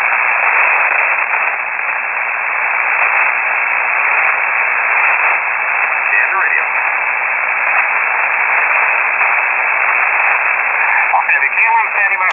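Shortwave receiver on the 3476 kHz aeronautical HF channel, giving a steady, loud hiss of static between transmissions. A faint voice starts to come through the static near the end.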